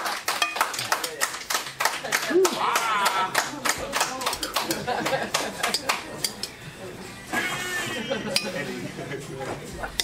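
A plastic spoon scraping and knocking against a large glass bowl, a fast run of clicks and clinks that thins out after about six seconds.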